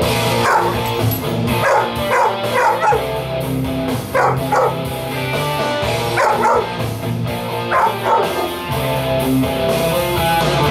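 A dog howling along to instrumental electric-guitar rock music in repeated short howls.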